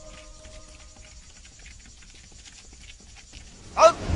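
Background music trailing off in the first second, then faint, irregular footfalls of people running over dry, rough ground. Just before the end, a short, loud cry.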